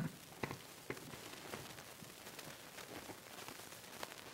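Faint hiss with a few soft knocks and clicks in the first second, then scattered light crackle: noise from a conference microphone and PA line while a sound problem is being fixed.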